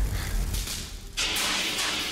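A low rumble dies away, then a loud hiss starts a little over a second in: a fire extinguisher sprayed onto a sparking machine that has overloaded.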